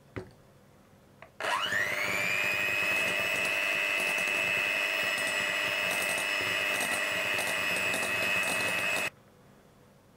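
Electric hand mixer beating egg yolks in a glass bowl: after a click, the motor starts about a second and a half in, its whine rising quickly to a steady pitch, and it runs evenly until it cuts off suddenly near the end.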